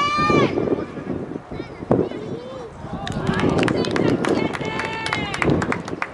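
Shouting voices at a youth soccer match: a high-pitched yell at the start, then about halfway through a run of sharp claps with more yelling, over a steady low rumble of wind on the microphone.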